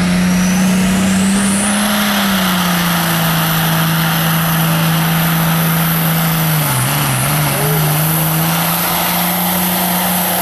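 Diesel semi truck engine running hard under full load as it pulls the sled. The low engine note is steady and dips briefly about seven seconds in. Over it a high-pitched whine rises during the first two seconds, then holds steady.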